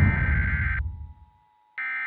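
Emergency Alert System test broadcast: the electronic data-header tones that open an EAS message, heard as two steady bursts of about a second each with a pause of about a second between them, the second starting near the end.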